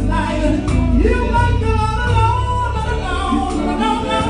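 Live gospel band music: a singer's voice held and bending over electric bass guitar and drums.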